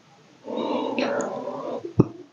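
A man's low, whispered voice lasting just over a second, after a short quiet, during a pause in his talk.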